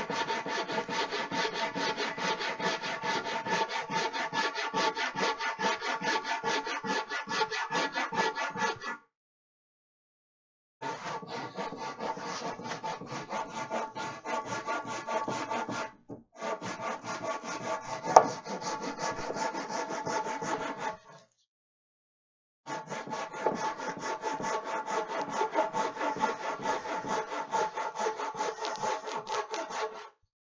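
Handsaw ripping a long wooden board by hand, in fast, even back-and-forth strokes. The sound drops out completely twice for a second or two, and there is a single sharp knock about two-thirds of the way through.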